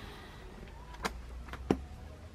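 Three short, sharp knocks, the loudest near the end, over a steady low hum.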